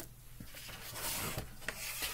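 Sheets of paper and card sliding and rubbing against each other as they are moved by hand across a work surface, with a couple of light taps.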